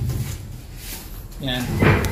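Faint gritty crunching and scraping of damp sand-and-cement dry-pack mortar being scooped and squeezed by hand, with a dull thump at the start; a man speaks a word near the end.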